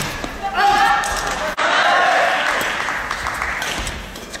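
Sounds of a badminton rally on an indoor court: two spells of high-pitched squeals that rise and fall in the first two and a half seconds, with a few light clicks later.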